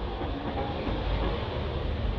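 A steady low rumble with hiss, outdoor background noise with no distinct event standing out.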